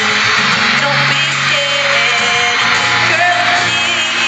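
Live pop music with singing, heard from the audience in a large arena, under a steady wash of fans screaming and cheering.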